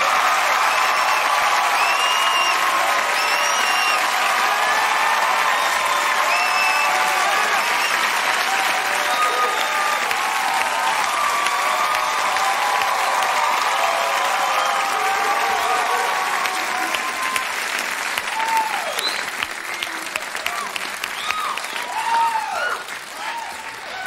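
Large studio audience applauding and cheering with whoops, loud and sustained, then thinning out over the last several seconds into scattered claps and shouts.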